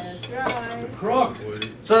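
Quiet talk in short broken bits with a few sharp clicks among it, then a man's voice picking up again near the end.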